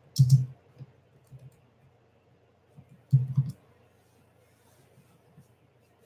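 A few short clicks and taps, with the two loudest coming near the start and about three seconds in.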